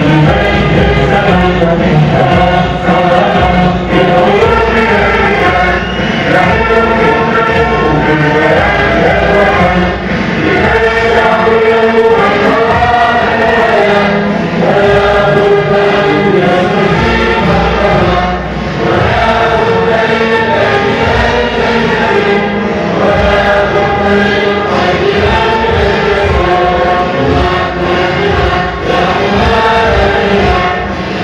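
A large crowd singing a song together in unison, loud and continuous.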